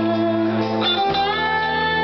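Live blues band playing an instrumental: an electric lead guitar holds long sustained notes over bass, bending up into a new note about halfway through.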